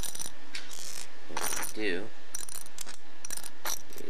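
Small plastic LEGO pieces clicking as they are dropped into a small plastic bucket and handled: a string of short, sharp clicks.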